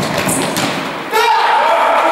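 A futsal ball struck hard with a single thud, followed about a second later by loud shouts of players in a sports hall as the shot goes in for a goal.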